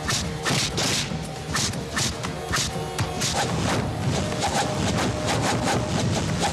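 Fight-scene background score with dubbed punch and kick impacts and swishes, several sharp hits a second over the music.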